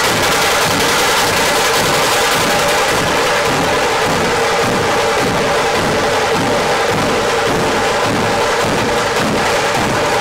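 Troupe of Maharashtrian dhol drums beaten with sticks, playing together in a loud, fast, steady rhythm.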